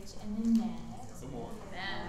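A woman's voice speaking into a microphone: only speech.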